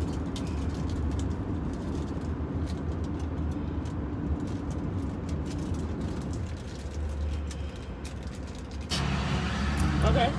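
Steady low rumble of a car's engine and road noise heard inside the cabin of a car being driven. Near the end the sound changes abruptly to a different, fuller in-car background.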